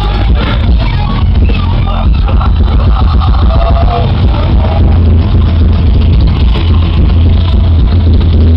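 Thrash metal band playing live and loud: distorted electric guitars, bass and drums in a continuous heavy wall of sound.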